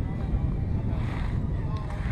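Wind buffeting the microphone, a steady low rumble, with faint voices near the end.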